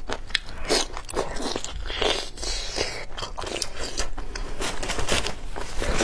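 Close-miked eating: a person biting and chewing food, with a steady run of wet mouth clicks and crunches.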